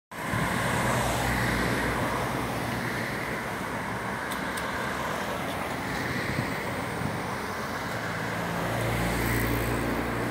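Road traffic passing slowly: car engines running and tyres on asphalt. A car's engine grows louder near the end as it passes close by.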